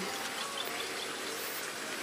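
Faint outdoor ambience: a steady hum of insects with a few soft bird chirps about half a second in.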